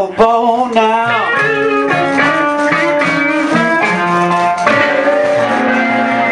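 Live blues band with electric and acoustic guitars, opening on a sharp accent and then settling into sustained chords, with a guitar note bending down in pitch about a second in.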